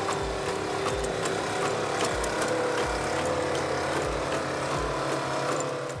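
DARPA's LS3 (Legged Squad Support System) robot running: a steady mechanical drone of its engine-driven hydraulics, with a low thump about once a second.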